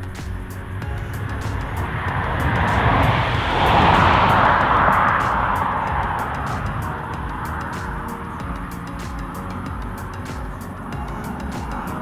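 Noise of a passing vehicle that swells to its loudest about four seconds in and then slowly fades, with faint background music.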